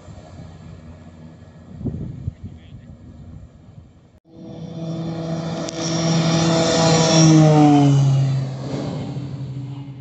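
Beechcraft C90 King Air's twin PT6A turboprop engines growing loud as the plane speeds along the runway past the listener, their pitch dropping as it goes by, then fading away. A quieter steady rumble comes before it.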